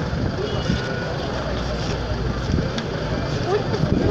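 Busy street-market background: a steady low rumble with people talking, the voices growing clearer near the end.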